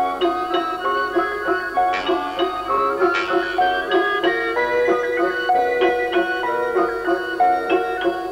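Lively background music: a quick run of plucked-string notes.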